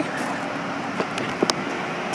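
Steady hum of a 2007 Ford Taurus idling, with a couple of light clicks about a second to a second and a half in.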